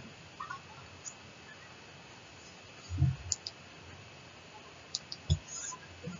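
Faint steady hiss with a thin high whine, broken by a few scattered clicks and two short low thumps, about halfway through and again near the end.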